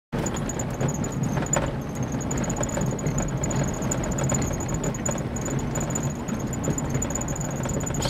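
Steady low rumble of a running vehicle, with a thin, high, rapidly pulsing chirp above it.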